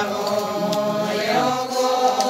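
A group of mostly women's voices chanting a ponung dance song together, steady and unbroken.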